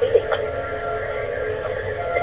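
Telephone answering-machine message playing back over a phone line: narrow, tinny line noise with a brief snatch of voice just after the start.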